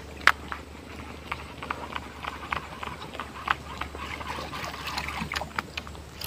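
Irregular sharp clicks and ticks, several a second, from a baitcasting reel and rod as a cast lure is retrieved, over a low steady hum. One louder click comes just after the start.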